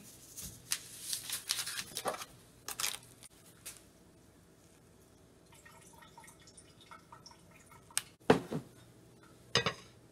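Kitchen handling sounds: small clicks and faint rustling as herbs are laid into a crock pot of stew. Near the end come a few sharp knocks and clatter, the loudest about eight seconds in, as the crock pot's glass lid is handled and set on.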